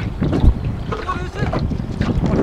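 Wind buffeting the microphone on a boat on open water, with people's voices over it; a strong gust hits about half a second in.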